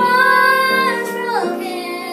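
Two young girls singing a hymn together, holding a note that drops in pitch about one and a half seconds in.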